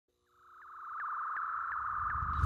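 Synthesized intro sound effect: a steady high electronic tone fading in about half a second in, with short rising chirps repeating a little under three times a second.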